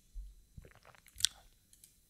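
Faint wet mouth sounds close to a microphone, lip smacks and small tongue clicks right after a sip of a drink, with one sharper click a little past a second in.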